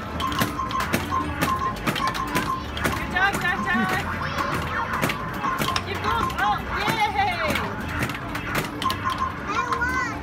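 Mini basketball arcade game in play: small balls knock and clatter against the machine again and again, over a repeating electronic beeping tune, with children's voices in the background.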